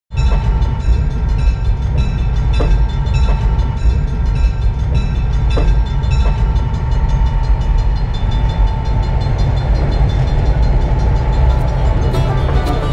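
Yellow rail maintenance vehicle rolling past close by: a heavy, steady rumble with regular clicks about twice a second and a steady high tone that fades out about nine seconds in.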